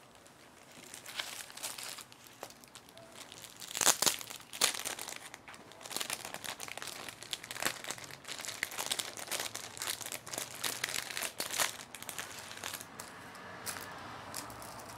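Loose paper sheets rustling and crinkling as they are turned and handled, in a run of short rustles, the loudest about four seconds in.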